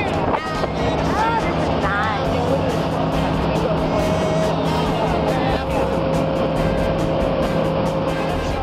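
Motorboat engine running steadily while the boat travels at speed, with people's voices over it.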